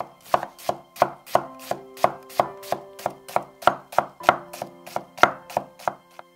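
Chef's knife slicing a red onion on a wooden cutting board: a steady run of crisp knife strikes on the board, about three a second.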